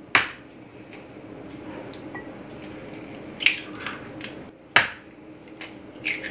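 Eggs being cracked on the edge of a glass bowl: a few sharp taps, one just after the start and the rest in the second half.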